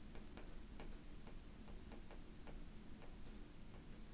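Faint, light clicks of a stylus tip tapping on a tablet's glass screen during handwriting, coming at roughly two to three a second.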